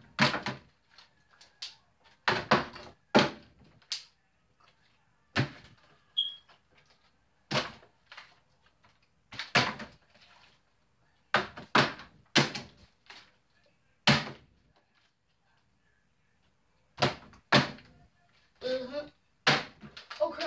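A partly filled plastic water bottle being flipped and landing with hollow thuds on a wooden desk, about a dozen times. Many landings come as quick double knocks as the bottle hits and then bounces or tips over.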